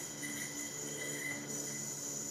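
Duncan Freehand Pro yo-yo spinning in a string mount, a faint steady whir from its bearing and string.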